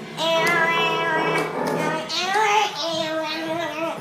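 A child singing in a high voice, a simple melody of bending and held notes that carries on throughout.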